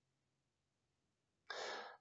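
Near silence, then a man's short, breathy in-breath about one and a half seconds in, just before he starts speaking again.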